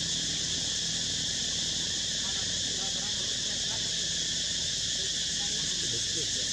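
Steady, unbroken high-pitched chorus of insects such as cicadas or crickets, with faint short chirps underneath.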